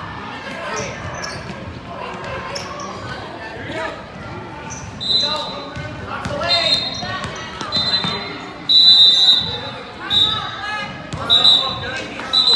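A basketball bouncing on a hardwood gym floor amid voices in a large, echoing hall. From about five seconds in there is a run of short, shrill, high-pitched squeals that all keep the same pitch, the loudest about nine seconds in.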